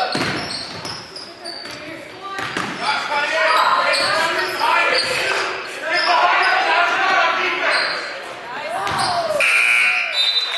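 Basketball bouncing on a hardwood gym floor during play, under the voices of players and spectators in the gym. A short, steady high-pitched sound comes in near the end.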